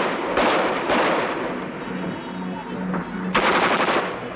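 Bursts of automatic gunfire from a machine gun, each a rapid string of shots: one right at the start, two more about half a second and a second in, and another near the end.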